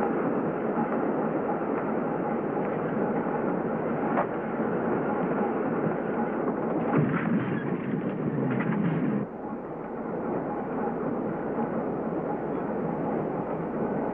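Subway train running, heard from inside the car: a loud steady rumble and rattle with a few sharper clanks, easing somewhat about nine seconds in.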